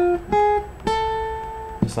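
Acoustic guitar playing single plucked notes up the top of an A harmonic minor scale: F, then G sharp, then the octave A, which rings for about a second.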